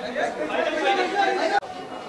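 A man speaks, saying "thank you", over the chatter of people around him. The sound breaks off suddenly near the end.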